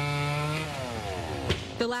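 Chainsaw held at full throttle, then its pitch falls as the throttle is let off. A sharp knock comes about a second and a half in.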